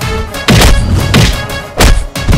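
Heavy punch-and-kick impact sound effects from a film fight scene: three hits about two-thirds of a second apart, the last the loudest, over a background music track.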